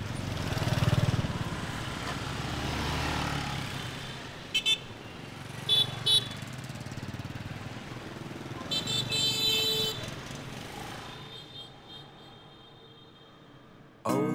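Street traffic of motorbikes: an engine passes close about a second in, then short horn toots, one beep and then two quick ones around the middle and a longer honk of about a second later on. The traffic noise then fades away.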